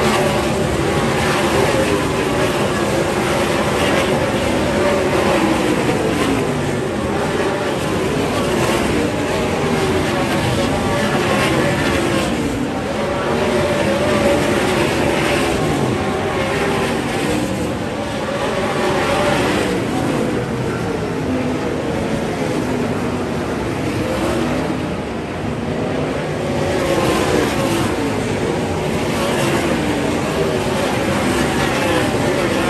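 A field of 410 sprint cars racing, their methanol-burning 410 cubic inch V8s at full throttle, several engines overlapping in a continuous loud run that swells and fades as the cars come past and go down the straights.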